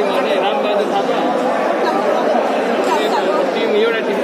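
Several people talking at once, overlapping chatter echoing in a large indoor sports hall.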